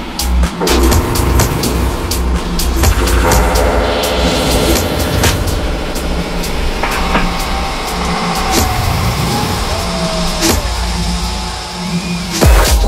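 Electronic dance music played loud over a club sound system, with a repeating bass beat and gliding synth sweeps; the music thins out briefly near the end.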